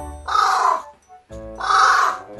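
A carrion crow calling twice: two harsh caws about a second apart, each lasting about half a second.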